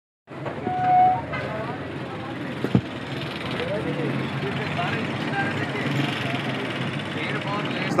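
Busy bus-stand street noise: a steady hubbub of background voices and vehicle engines, with a short horn toot about a second in and a single sharp click just under three seconds in.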